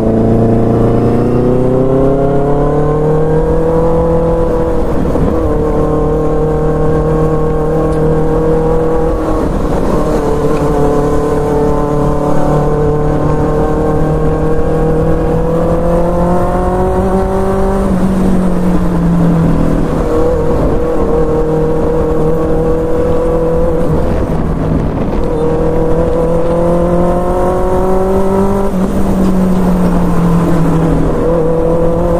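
Benelli 600i's inline-four engine through a loud exhaust, heard from the rider's seat while riding. The engine note climbs over the first few seconds, holds steady, sags briefly a little past halfway, then climbs again near the end.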